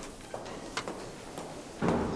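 A few faint clicks and knocks from a plastic desk telephone receiver being handed over and raised to the ear, with a stronger knock near the end.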